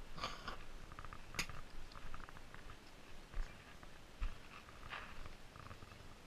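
Faint scattered crunches and knocks, with a sharp click about one and a half seconds in and a couple of low thumps near the middle.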